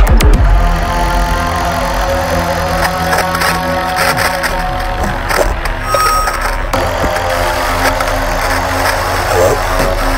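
Electronic bass music from a DJ mix. A loud hit comes right at the start, then a quieter passage of held synth tones over a steady low bass drone.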